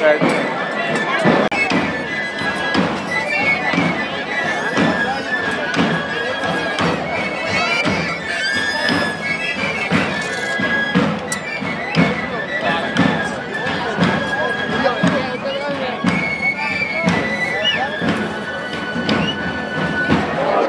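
Traditional Andalusian pipe and tabor (flauta y tamboril) playing: a high three-hole pipe melody of held notes over steady tabor drum beats, with crowd voices around it.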